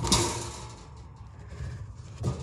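Slide-out Camp Chef Yukon two-burner camp stove pushed back into its compartment on metal drawer slides, with a sharp knock just after the start as it stops, then fading handling noise over a low rumble.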